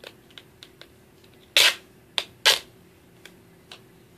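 Duct tape being pulled off the roll in three short rips in the middle, the first and last loudest, among light handling clicks.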